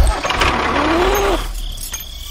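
Tractor engine starting: a knock, then the engine turning over and running, with a brief rise and fall in pitch about a second in before it settles lower.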